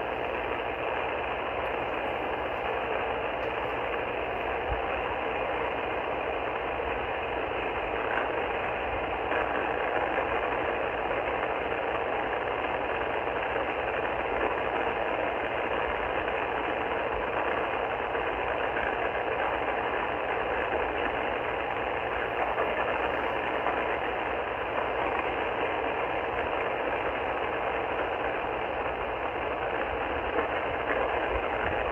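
Steady shortwave static hiss from an Icom IC-R30 receiver in upper-sideband mode, tuned to the 8918 kHz aeronautical channel, with no transmission heard.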